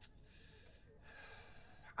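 A man breathing faintly and audibly in a hesitant pause mid-sentence: two breaths of about a second each, after a small click at the start.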